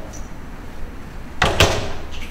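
A single short, loud bump about one and a half seconds in, against the low murmur of a large room.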